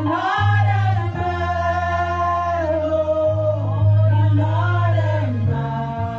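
Two women singing a gospel worship song into microphones, the melody gliding and held in long notes, over steady low held accompaniment notes that change every second or so.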